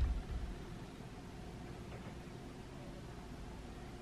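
Quiet room tone: a faint, steady hiss, with a soft low bump at the very start.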